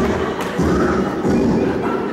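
Several heavy thuds of performers stamping, kicking and landing on a stage floor during a staged fight, heard over background music.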